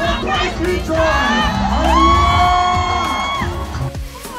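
Loud music with a crowd cheering and singing along, with one long held note about halfway through.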